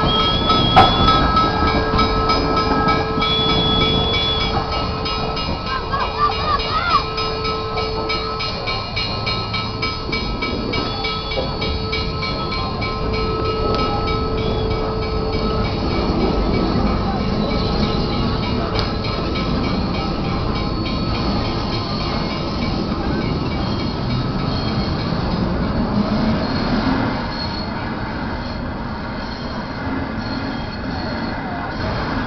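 Western Maryland 734, a 2-8-0 steam locomotive, rolling slowly past with its tender. Steady high wheel squeal comes and goes over the first half, over a continuous rumble of the engine and wheels on the rails.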